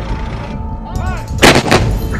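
Artillery or cannon fire: two loud shots in quick succession in the second half, over a steady low rumble.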